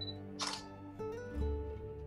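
A single simulated DSLR shutter click from the camera-simulator web page, about half a second in, as the shot is taken. Soft background music plays under it.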